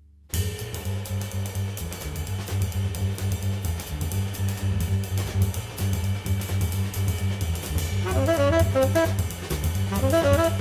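Jazz trio of drum kit, double bass and saxophone: drums with cymbals and the double bass come in together sharply just after the start and keep a steady swing, and the saxophone enters with the melody about eight seconds in.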